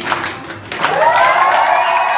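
Concert audience clapping as a song ends. About a second in, a long held tone rises briefly and then stays steady.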